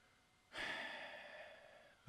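A man sighing, a long audible breath into a close microphone, starting suddenly about half a second in and fading away.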